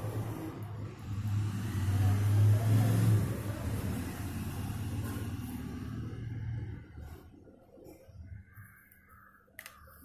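A low rumble with a light hiss over it, swelling to its loudest two to three seconds in and dying away about seven seconds in, followed by a few faint clicks.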